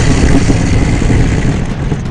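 A loud, rough, low growling roar, a monster-style sound effect, easing off a little near the end.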